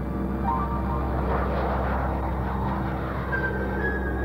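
Lockheed U-2's single jet engine at takeoff power as the plane lifts off and climbs over. The noise swells to a peak about halfway through, then fades, over steady, low background music.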